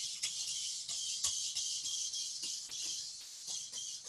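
A cyber:bot robot's high-speed continuous-rotation servos driving it at full speed around a line-following track: a steady high whir with scattered clicks and rattles.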